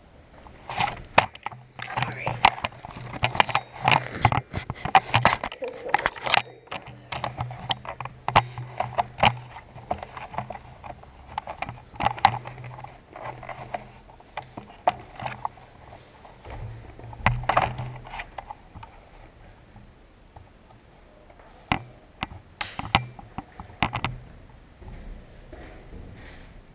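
Many irregular sharp knocks and clicks inside a steel shipping container, with indistinct voices and a steady low hum that stops about 18 seconds in.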